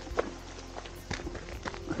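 Footsteps on a dirt forest track, a handful of irregular steps, over soft background music with held notes.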